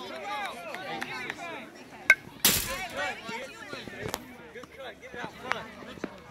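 Overlapping chatter of children's and spectators' voices at a youth baseball game, with a sharp click about two seconds in and a short loud rush of noise just after it.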